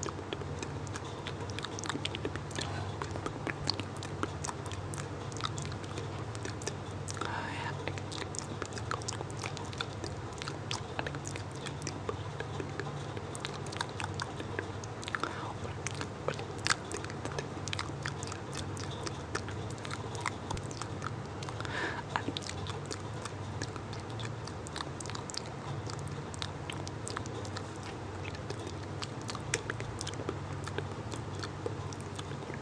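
Close-miked inaudible whispering with many wet mouth clicks and lip smacks, irregular and continuous, over a steady low hum.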